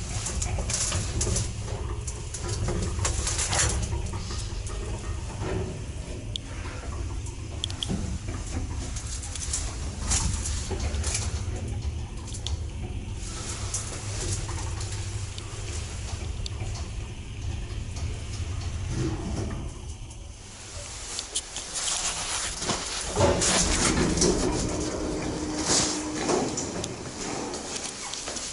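Electric passenger lift (1 m/s, 320 kg capacity) running, with a steady low rumble from the moving car and scattered clicks and rattles. The rumble drops away about twenty seconds in, then a louder few seconds of clatter with a steady hum follow.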